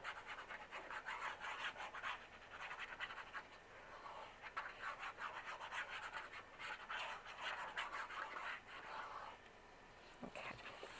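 Plastic squeeze bottle's applicator tip scraping back and forth across paper, spreading liquid glue in quick strokes; the scratching eases off near the end.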